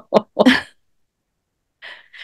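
A woman laughing briefly: two quick sharp bursts and a short voiced laugh, all within the first second.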